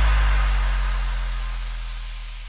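The closing of electronic background music: a deep held bass note with a hiss above it, fading out.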